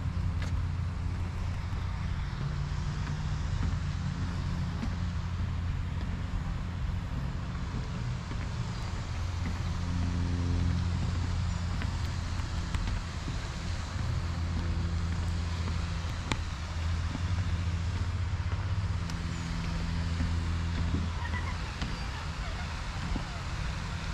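Steady hum of road traffic, with the low drone of engines shifting in pitch every few seconds.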